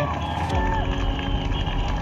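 An accompanying race vehicle's engine runs steadily, coming in about half a second in, under the noise of spectators lining the course.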